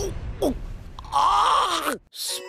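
An anime character's voice groaning: a short falling sound, then a drawn-out groan about a second in that cuts off abruptly at the end.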